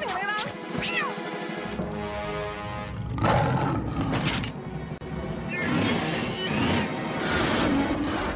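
Cartoon soundtrack: music under a cartoon character's squealing, whimpering vocal sounds with no real words, rising and falling in pitch. Louder noisy outbursts come about three seconds in and again near the end.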